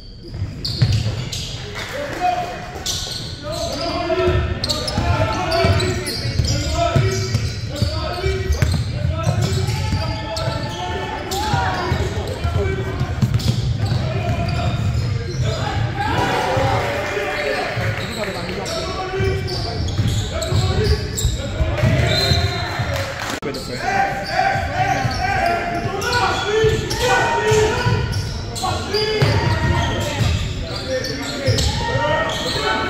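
Basketball game in a gym: a ball bouncing on the hardwood and knocks of play, with indistinct shouting and chatter from players and bench, echoing in the large hall.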